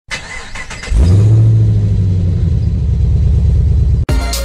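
A car engine starting: about a second of clicks, then the engine catches and runs with a deep steady note that settles into an even, pulsing low idle.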